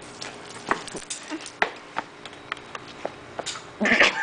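Small landscaping stones clicking against each other as they are scooped up by hand from a gravel bed, a string of irregular sharp clicks.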